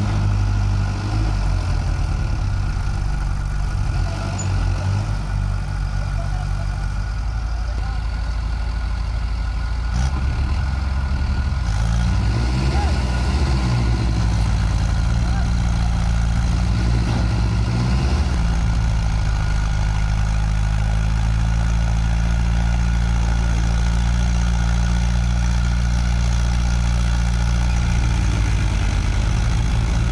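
Diesel tractor engines running steadily under load while a tractor and its paddy-laden trolley are pulled out of deep mud. The revs rise and fall twice, about halfway through and again a few seconds later.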